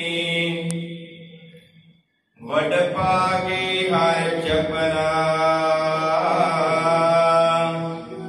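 A man chanting Gurbani verses into a microphone in long, drawn-out melodic phrases. A held note fades away about two seconds in. After a short pause a new long phrase begins, with its pitch wavering slowly, and is held until near the end.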